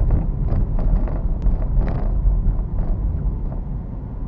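A car driving on a city street, heard from inside the cabin: a steady low rumble of engine and tyres, with a few brief knocks and clicks scattered through it.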